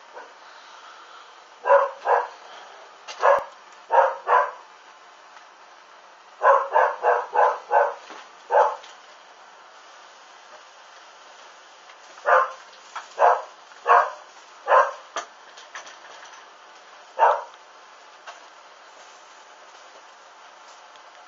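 A dog barking repeatedly, in irregular runs of one to five short barks with pauses between.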